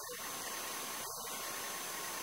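Steady hiss of the recording's background noise with faint, thin high tones, in a pause in a man's speech.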